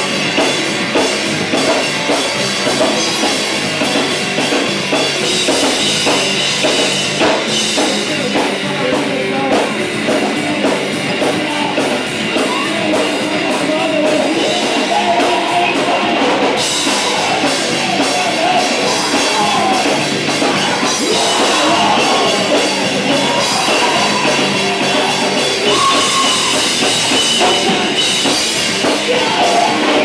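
Live rock band playing a song: guitar and drum kit, loud and continuous, heard from within the crowd.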